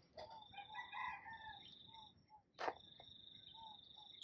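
A rooster crowing faintly, one crow of about two seconds, over a thin steady high tone, with a single sharp click about two and a half seconds in.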